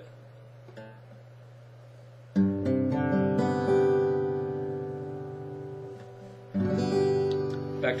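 Yamaha steel-string acoustic guitar strummed twice, once about two seconds in and again near the end, each chord left to ring and fade. The chord is an open G with the A-string note raised one fret to the third fret.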